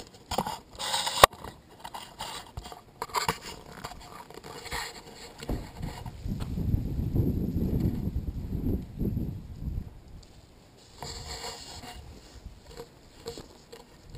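Footsteps scuffing over gravel and dry leaves, with a sharp click about a second in. A low rumble follows for a few seconds in the middle, then a few fainter scuffs.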